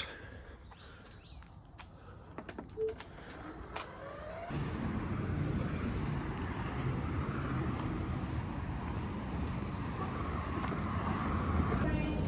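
A few faint clicks from the plastic door latch of a dog crate, then from about four and a half seconds in a steady low outdoor rumble.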